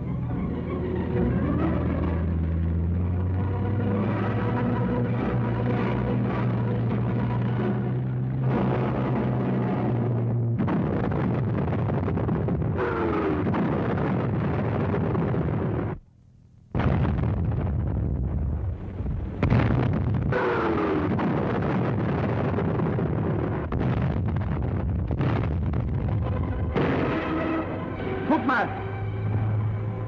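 Old film-soundtrack battle noise: a steady rumble of armoured half-track engines, with explosions breaking in. The sound cuts out for under a second about sixteen seconds in.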